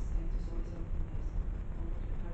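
Faint, distant speech over a steady low rumble of room noise.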